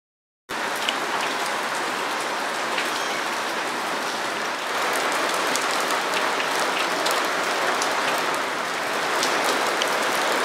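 Steady rain falling, starting suddenly about half a second in, with individual drops ticking now and then over the even hiss.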